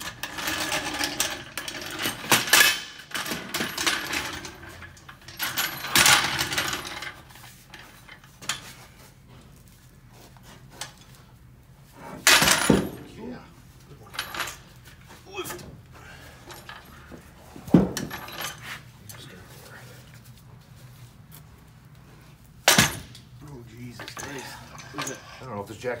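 Heavy steel hydraulic bottle jack being handled and set onto a floor jack: scraping and knocking during the first several seconds, then three sharp metal clanks about twelve, eighteen and twenty-three seconds in.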